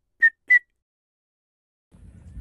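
Two short, high whistled notes in quick succession near the start.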